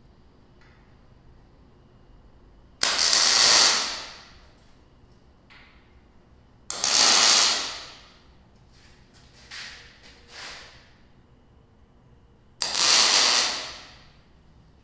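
MIG welder laying tack welds on a square steel tube post: three loud bursts of about a second each, some four seconds apart, with two brief faint ones between the second and third.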